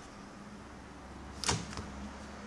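A sharp plastic click about one and a half seconds in, followed by a fainter one: a Toshiba NB550D netbook's battery pack coming free of its latches as it slides out of its bay.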